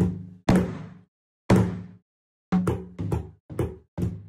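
Taiko drums struck with wooden sticks: single deep strikes about half a second and then a second apart, followed by a quicker run of strikes in the second half, each hit ringing briefly before dying away.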